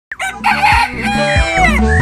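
A rooster crowing in the first second, followed by the start of an intro jingle: steady musical notes with several falling, sliding tones.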